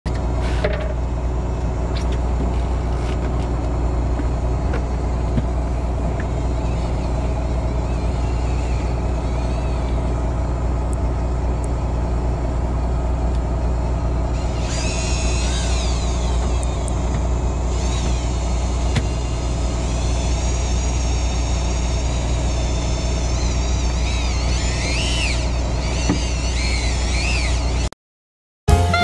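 A boat's engine running steadily with a low, even hum, with faint wavering high-pitched chirps over it about halfway through and again near the end.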